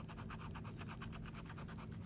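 A metal tool scratching the latex coating off a scratch-off lottery ticket: a fast, even run of short scraping strokes, about ten a second.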